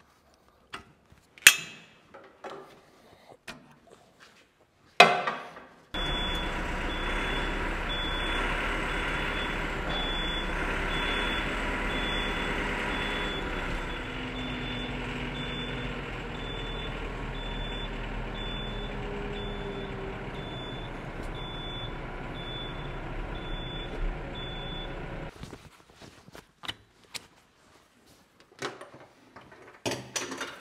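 A couple of sharp metal knocks. Then a Yanmar tractor's engine runs steadily for about twenty seconds, with a short high warning beep repeating about once a second, and both stop abruptly a few seconds before the end.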